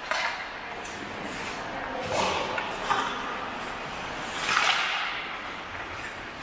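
Ice hockey skate blades scraping and carving on the rink ice in several short hissing strokes, the loudest a little over four and a half seconds in, with a sharp click of a stick on the puck a little under a second in.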